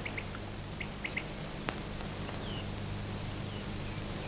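Faint, scattered bird chirps over the steady hiss and low hum of an old film soundtrack, with a single soft click a little before halfway.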